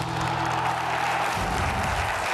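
Short TV show bumper music: a held low chord that cuts off about a second and a half in, with applause underneath that carries on as the show returns to the studio.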